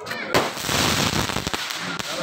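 Aerial firework bursting: a sharp bang about a third of a second in, followed by about a second of dense crackle, then a smaller pop.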